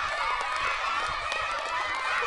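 Crowd of spectators cheering and shouting, many voices overlapping at once.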